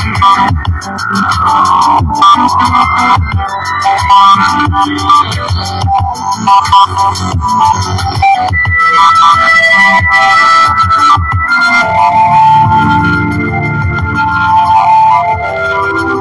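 Electronic keyboard music with sustained synthesizer notes over a repeating low drum beat.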